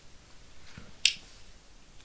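A single short, sharp click about a second in, against quiet room tone.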